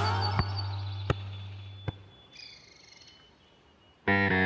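A distorted electric-guitar chord rings out and fades over the first two seconds, while a cartoon soccer ball hits the ground three times, about three-quarters of a second apart. Near the end a brief, faint chirping effect follows.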